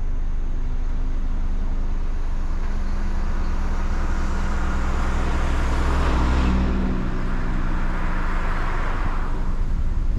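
Two cars pass on a two-lane road. The first, an SUV, passes close about six seconds in, and a second car follows a couple of seconds later. Under them runs the steady low hum of an idling engine.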